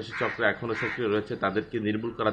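Only speech: a man talking in Bengali without pause.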